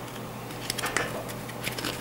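A deck of tarot cards being handled in the hands, card edges giving a string of soft clicks and rustles as cards are thumbed through.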